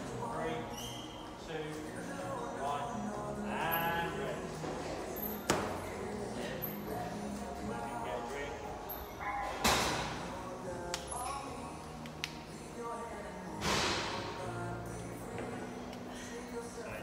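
Background music with singing, played over a gym's sound system. A few sharp thuds and knocks from the workout cut through it, the loudest about five and ten seconds in.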